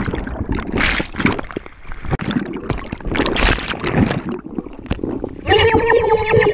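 Water splashing and sloshing in irregular surges around a person in the water. Near the end a voice shouts out in a long held call.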